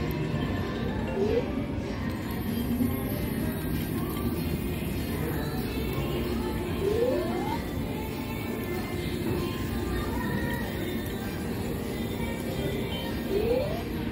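Casino floor din of slot-machine music and background chatter, with short rising electronic tones three times: about a second in, about seven seconds in, and near the end.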